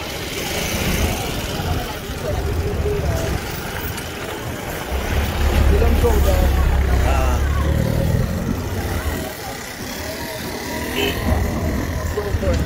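Street traffic noise with a car engine running close by, its low rumble loudest about halfway through, and people talking in the background.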